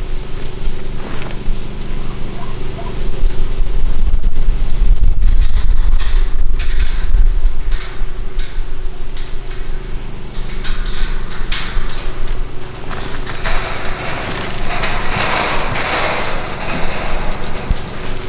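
A steady motor hum with a heavy low rumble, loudest in the first half, and bursts of rattling noise in the second half.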